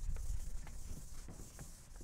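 Chalk tapping and scratching on a blackboard as a lecturer writes, with dull low thumps in the first half second.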